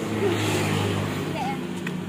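A motor vehicle's engine running close by, a steady low hum with a rush of noise that swells in the first second and then eases off, as of a vehicle passing.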